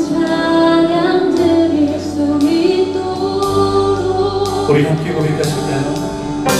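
Live worship band playing a song: a female lead vocal with other voices singing along, over electric bass and a drum kit, with cymbals struck about once a second.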